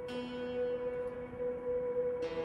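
Background music of sustained, bell-like drone tones; a lower held note comes in at the start.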